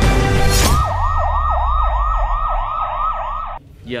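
Music gives way, about a second in, to an emergency siren on a fast yelp: quick down-and-up sweeps, about three a second, over a low rumble. It cuts off abruptly just before the end, when a man says a single word.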